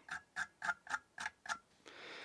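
Tweezers strumming across freshly fired stainless steel vape coils, making a quick run of light, evenly spaced clicks, about four a second. The strumming works out hot spots so the coils glow evenly.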